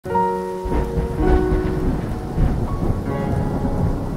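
Intro sound design: rain with a low, continuous thunder rumble, under soft music of held notes that change every half second or so.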